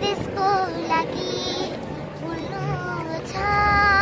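A young girl singing a Nepali song unaccompanied: several drawn-out notes, ending in a long held note near the end.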